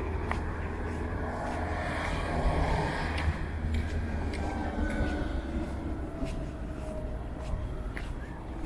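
Street ambience with a vehicle passing on the adjacent road, loudest about two to three seconds in, over a steady low rumble, with scattered light clicks.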